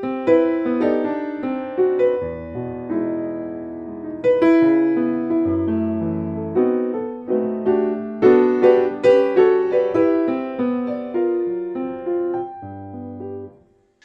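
Grand piano played solo in a jazz style: a flowing passage of struck chords and melody notes over low bass notes, the notes ringing on under the sustain, dying away just before the end.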